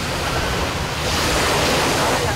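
Small waves washing onto a sandy beach, the surf growing louder about a second in, with wind rumbling on the microphone.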